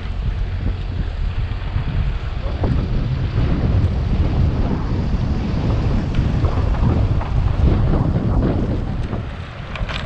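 Wind buffeting the microphone of a camera on a moving bicycle, a loud, steady low rumble, with tyre and road noise underneath.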